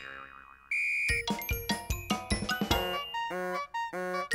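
Cartoon sound effects in a break in the background music: a wobbling boing that fades out, a short steady high beep about a second in, then a quick run of stepped electronic notes ending in a brief low buzz, before the music comes back in.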